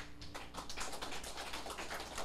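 An acoustic guitar's last chord dies away, then a small audience claps, a quick irregular patter of hand claps.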